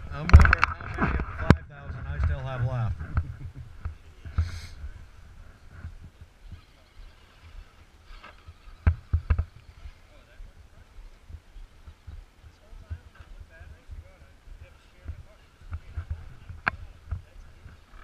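A man laughing and speaking briefly at the start, then radio-controlled rock crawlers creeping over rock: a faint steady whine from their small electric motors, with a few sharp clicks and knocks. Two of the clicks come close together about nine seconds in, and one comes near the end.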